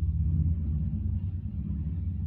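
A low, steady mechanical rumble with a droning hum, loudest in the first second and easing slightly after.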